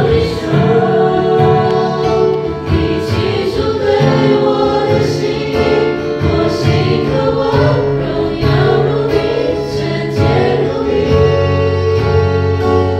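A small group of young people singing a Chinese worship song together as a choir, one voice carried on a microphone.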